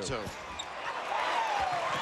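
Live college basketball game sound in an arena: crowd noise and court sounds during play under the basket, with a squeal that slides down in pitch about a second in and a steady held tone starting near the end.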